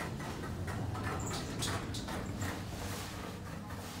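Low, steady hum inside a lift car, with faint scattered clicks.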